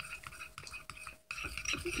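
Metal spoons stirring glue in small glass bowls: faint scraping and light, scattered clinks of spoon on glass.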